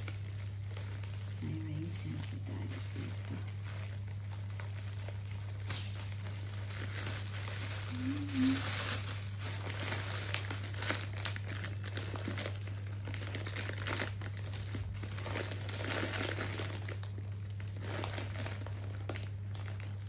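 Plastic packaging crinkling and rustling as it is handled, with scattered light clicks, growing busier from about six seconds in, over a steady low hum.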